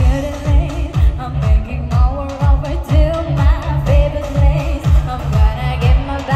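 Live pop music: a woman singing into a microphone over a band with a steady kick drum beat, about two beats a second, through the concert sound system.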